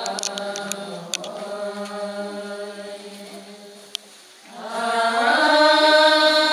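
Chanted music of sustained, droning voices. It fades down about four seconds in, then a new, louder held chord of voices swells in.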